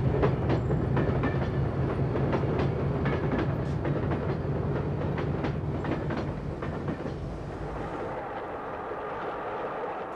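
British Rail Class 46 diesel locomotive moving off and passing close by with its Sulzer twelve-cylinder engine running, followed by its coaches, the wheels clicking over the rail joints. The engine note and clicks fade over the last few seconds as the train draws away.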